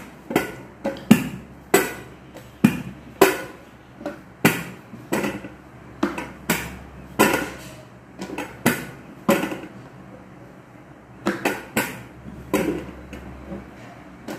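Wooden rolling pin clacking against an upturned stainless steel plate as chapati dough is rolled out: sharp knocks about twice a second, a short lull about ten seconds in, then a few more knocks.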